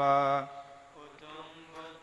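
Male voices chanting Pali Buddhist blessing verses (pirith) on a low held note that ends about half a second in, followed by a brief lull between phrases.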